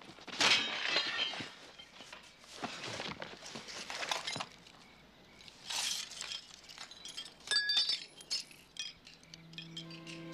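Clattering of objects being handled, with several brief glassy clinks and rings. Quiet music comes in near the end.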